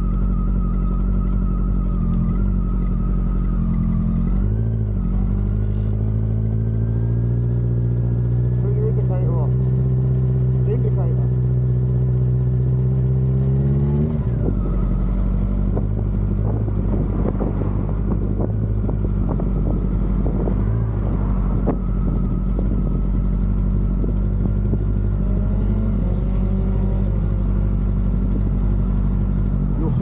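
Yamaha XJR1300 motorcycle engine heard from the rider's seat, with wind noise. It pulls with its pitch climbing slowly for several seconds, drops sharply about halfway through at a gear change or throttle-off, then runs on steadily at cruising speed.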